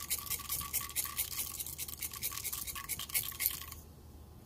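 Mustard seeds, cumin and split urad dal sizzling and crackling in hot ghee in a frying pan, a dense run of fast little pops that breaks off just before the end.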